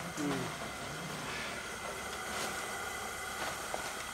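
Gas brooder burner running with a steady hiss, its mesh element glowing red-hot. A short voice is heard right at the start.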